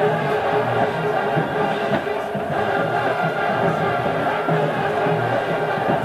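Marching band brass section (trumpets, mellophones, sousaphones) playing steadily in the stands at a football game.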